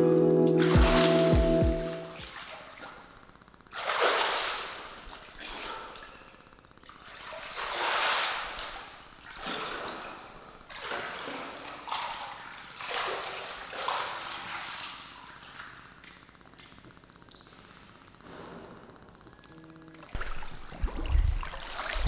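Music for about two seconds, then pool water sloshing and splashing as a person moves through it: a series of swells every second or two, fading to quieter lapping near the end.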